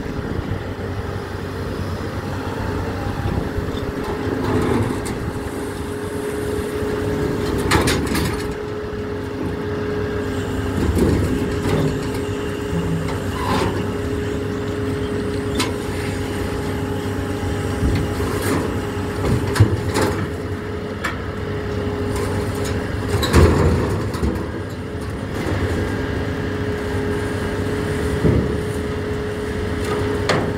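Scrapyard material handler running steadily, its engine and hydraulics giving a constant drone with a steady whine. It is lowering a lifting magnet on chains onto scrap sheet metal, and there are several sharp metal clanks and knocks along the way.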